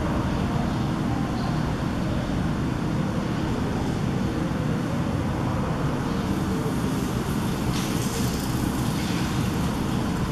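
Steady low rumbling background noise with no clear events, and a short hiss about eight seconds in.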